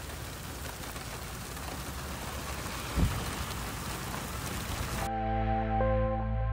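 Rain mixed with small hail falling on a dirt track, a steady hiss, with one low thump about three seconds in. About five seconds in it cuts to background music with held chords.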